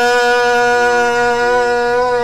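Electronic keyboard holding one long note in a reedy, wind-like voice, steady at first and starting to waver slightly near the end.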